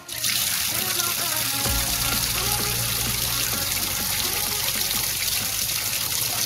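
Water rushing in a steady spray from the open outlet of a plastic wall tap, starting abruptly and running evenly throughout.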